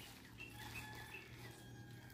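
Near silence: a faint outdoor background with a low steady hum and faint bird chirps.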